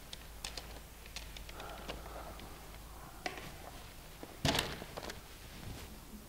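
Scattered light clicks and taps, with a louder cluster of knocks about four and a half seconds in, from a cricket batter moving about the crease with bat and pads as he takes guard.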